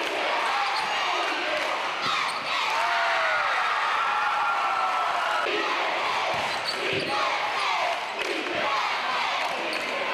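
Basketball game on a hardwood gym floor: the ball bouncing in scattered knocks, with short squeaks from the players' sneakers over steady crowd chatter and shouting in the hall.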